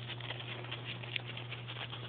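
A dog digging and nosing in snow, its paws and muzzle making an irregular run of quick crunches and scratches.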